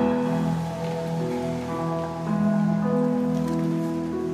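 Indoor percussion ensemble playing a slow, soft passage of sustained chords on its front ensemble of keyboard percussion and synthesizers, the held notes changing about every second.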